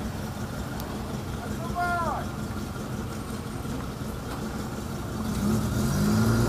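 Slow-moving vans and cars running along a wet street, engines humming over tyre noise. The lead UAZ van's engine grows louder near the end as it comes closer. There is a brief falling-pitched sound about two seconds in.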